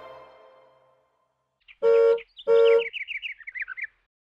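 The tail of a song's music fades out, and after a short silence a bird-call sound effect: two short, identical pitched notes about half a second apart, then a quick run of high chirps that falls in pitch.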